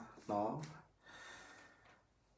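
A man's single short spoken syllable, followed by a faint breathy hiss.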